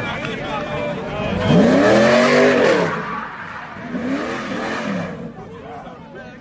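Fourth-generation Chevrolet Camaro SS's V8 revving up and back down twice as it spins its rear tyres doing donuts, over a rush of tyre noise that stops about five seconds in. Crowd voices around it.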